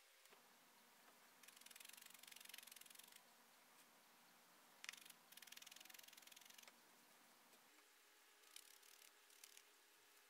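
Faint rapid stabbing of a multi-needle felting pen into loose wool, in two runs of a second or two each, with a single click between them.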